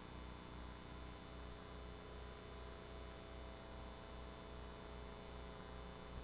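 Faint low electrical hum that pulses about twice a second, with a few thin steady tones and a constant hiss over it. This is line noise on the audio feed, with no speech.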